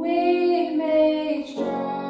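A woman singing a slow worship song with digital piano accompaniment, holding long notes; the line breaks and a new note begins about one and a half seconds in.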